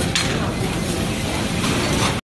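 Supermarket background noise: a steady hubbub of the store around the checkout queue, with a brief clatter just after the start.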